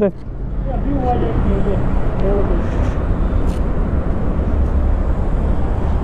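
Steady low rumble of roadside traffic and wind, with faint voices in the background about a second in.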